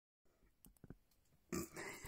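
A few faint clicks, then a sudden breathy burst of a woman's non-speech vocal sound about one and a half seconds in.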